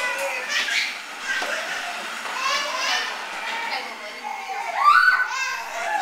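Young children's voices as they play: high-pitched chatter and cries, with a louder, rising cry about five seconds in.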